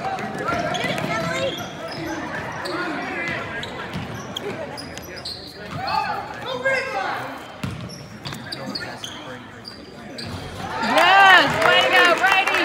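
A basketball bouncing on a hardwood gym floor during play, under spectators' voices in an echoing gym, with a loud shout near the end.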